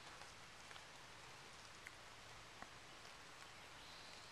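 Near silence: a faint, steady outdoor background with two soft ticks past the middle.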